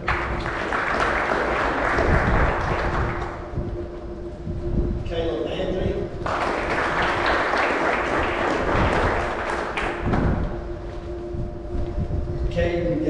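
Audience clapping in a large hall, two rounds of applause with a short break about five seconds in, over a steady hum.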